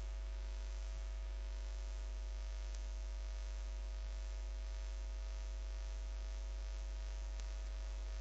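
Steady low electrical mains hum with no other clear sound.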